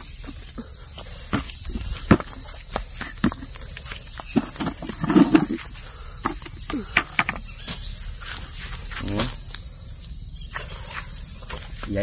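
Steady high-pitched insect chorus, with scattered short clicks, rustles and light knocks from footsteps and the cast net being handled and set down on the ground.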